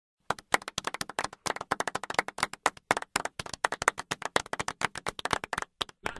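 Scattered applause from a small audience, several people clapping unevenly, starting just after the opening and cutting off abruptly near the end.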